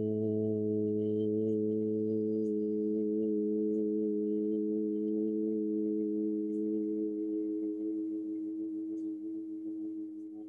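A long chanted OM held by two male voices as one steady hum; the lower voice drops out about two and a half seconds in, and the remaining tone fades away near the end.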